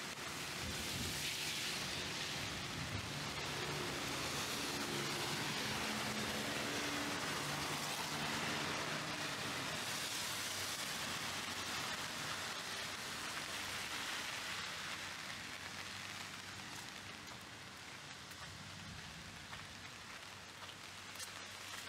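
Heavy sudden downpour (a 'guerrilla' cloudburst) falling on a street, a dense steady hiss of rain. Under it, a vehicle engine's low hum is heard in the first half, fading out, and the rain eases slightly near the end.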